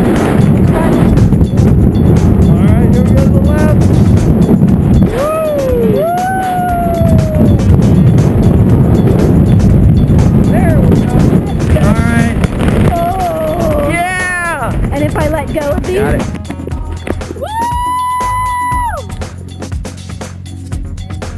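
Wind rushing over the helmet camera's microphone during parachute canopy flight, under a music track with gliding sung notes. Near the end the wind noise drops away and a single held note of the music remains.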